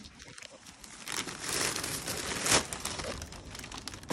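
Plastic takeout bag rustling and crinkling as it is pulled out of an insulated delivery bag and set down. The rustle starts about a second in, with its loudest crackle just past the middle.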